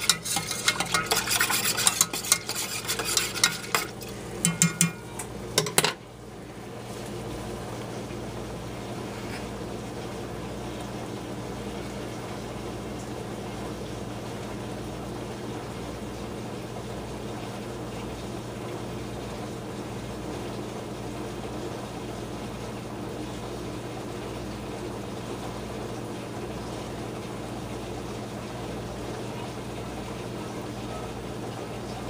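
Wire whisk stirring and scraping against a stainless steel saucepan of heating milk and cream, whisking in cinnamon. The whisking stops about six seconds in, leaving a steady low hum.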